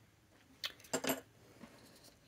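A quick cluster of small hard clicks and clinks about a second in, a pen being set down on the tabletop, followed by a single fainter tick.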